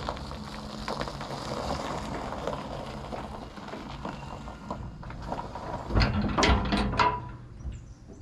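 Old 1967 Chevrolet pickup's engine idling low, with a louder rumble and a few sharp metallic clunks about six to seven seconds in.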